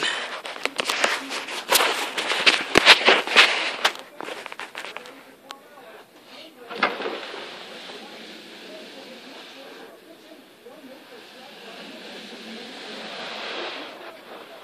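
Rustling and clattering handling noise for a few seconds, then a steady scuffing of slippered feet shuffling across carpet that grows louder toward the end. The shuffling builds up a static charge.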